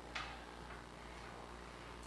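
Quiet room tone with a steady low hum, and one faint click just after the start.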